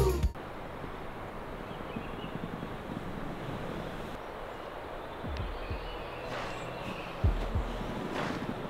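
Outdoor campsite ambience in a forest: a steady, even hiss, a few faint short high chirps, and a couple of brief low rumbles on the microphone in the last few seconds.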